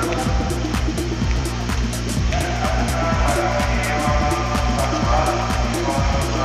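Background music with a steady, fast beat over a held bass, a melody line coming in about two seconds in.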